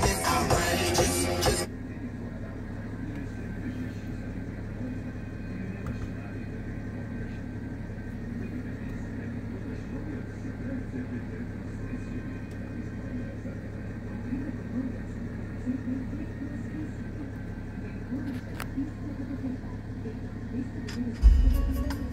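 Music with vocals playing through a BMW X6's aftermarket Android head unit and car speakers, cut off abruptly about a second and a half in. A steady low hum of the car cabin follows, with a loud low thump near the end.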